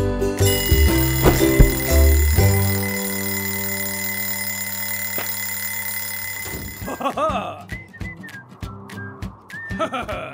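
A cartoon alarm clock ringing steadily for about six and a half seconds, over low thumps in the first couple of seconds. Then the ringing stops, and a cartoon character's wordless grunts and mumbles follow, with a few clicks, over the soundtrack music.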